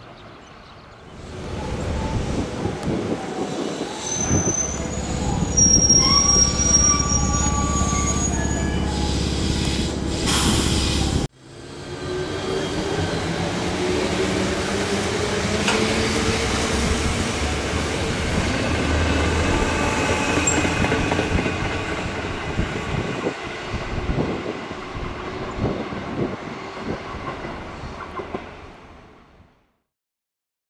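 Sanyo 3000 series electric train running into the station with high-pitched wheel and brake squeal. After a cut, it pulls away with a traction-motor whine that slowly rises in pitch, then fades out near the end.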